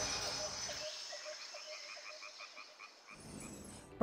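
The dying tail of the title music, then a rapid run of short, pitched animal calls, about six a second, that fades away.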